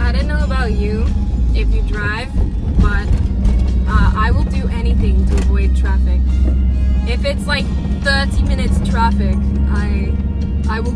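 A woman singing along to music inside a moving van, over the steady low rumble of the engine and road.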